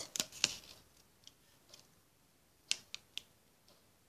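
Light hand-handling sounds of a paper sticker and a flexible fridge magnet being pressed together: a few short paper clicks and rustles, two near the start and three quick sharp ticks a little under three seconds in.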